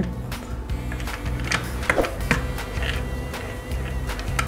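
Background music playing, with scattered light clicks from a plastic toy car being handled and turned over.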